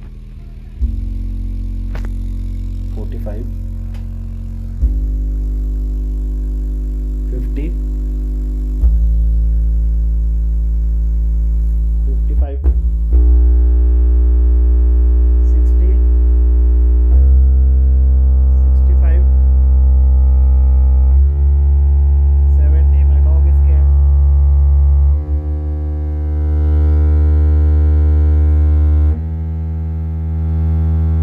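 Ground Zero GZTW 12 MK2 12-inch subwoofer mounted in a plastic paint bucket playing a run of steady low test tones, each held about four seconds before jumping to the next frequency, as its response is tested. Each tone carries a buzzy stack of overtones above it.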